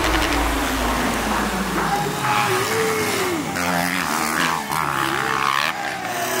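Motocross dirt bike engines revving, their pitch swinging up and down as the riders hit the jumps. The rising and falling revs are clearest from about two seconds in.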